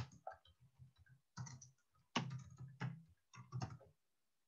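Computer keyboard typing: faint clusters of keystroke clicks coming in short bursts.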